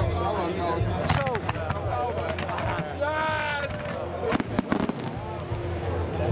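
Fireworks at a display going off: a sharp bang about a second in, then a quick cluster of cracks about four and a half seconds in, under spectators' talk.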